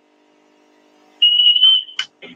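A loud, high-pitched electronic beep lasting a little under a second, starting just past the middle, over a faint steady low hum.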